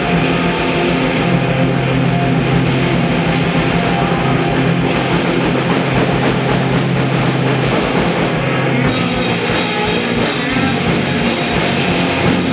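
A rock band playing loud live on stage, with electric guitars, bass and a drum kit. A low note is held for about six seconds, and the playing changes near the nine-second mark.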